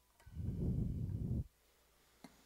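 Low, muffled rumble on a close-worn headset microphone, lasting about a second.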